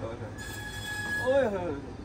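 Motorized sectional garage door rising along its tracks, its rollers giving a steady high-pitched squeal over the low hum of the opener.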